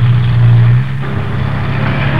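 Steady low rumble of an engine, loud at first and dropping in level about a second in.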